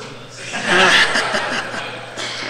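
Audience laughing in a lecture hall: the laughter swells about half a second in and dies down over the next second.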